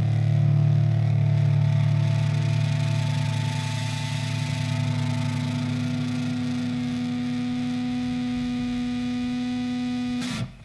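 Punk rock recording ending on a long held chord from distorted electric instruments, a steady drone with no beat.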